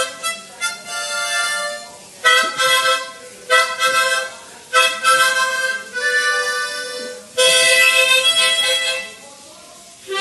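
A harmonica played as a melody of chord-rich phrases, each lasting a second or so with short breaths between them, dropping away about a second before the end.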